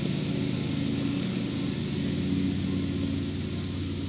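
A motor engine running steadily at idle: an even low hum that holds the same pitch throughout.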